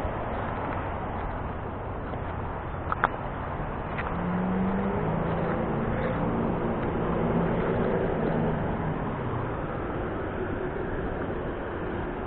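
Steady rush of flowing river water, with a road vehicle's engine hum swelling and fading from about four to nine seconds in. A single sharp click about three seconds in.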